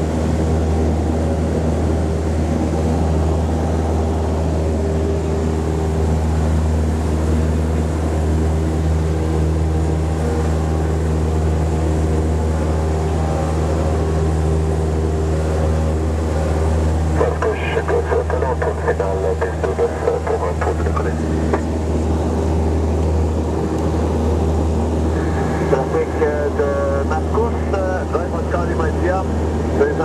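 Single-engine high-wing light aircraft's piston engine and propeller droning steadily at climb power, heard from inside the cockpit. A voice talks briefly over the drone twice, in the second half.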